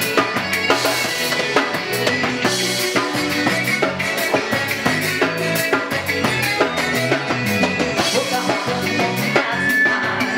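Live sertanejo band playing an instrumental passage with the drum kit prominent: a steady beat of kick and snare with cymbals, over guitar and bass.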